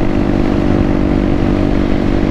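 Honda Grom's small single-cylinder engine running at a steady cruising speed, giving an even drone with no change in pitch.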